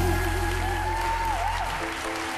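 Audience applauding at the close of a gospel song, while the band's held final chord fades out near the end.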